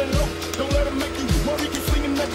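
Background music with a steady beat: a deep kick drum that drops in pitch, about every 0.6 seconds, under sustained musical tones.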